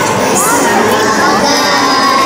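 A group of young girls singing a Carnatic song together into microphones, holding steady notes with a few sliding ornaments.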